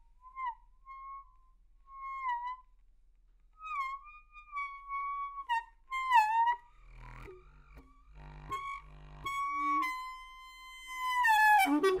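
A saxoschlauch, a saxophone mouthpiece on a 180 cm hose, playing short reedy notes that bend down in pitch at their ends. In the second half it drops to lower, breathier notes, then holds a long high note that slides downward and grows loudest near the end.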